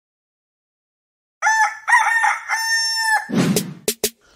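A rooster crowing once, a cock-a-doodle-doo sound effect starting about a second and a half in, its last note held. A short noisy burst follows near the end.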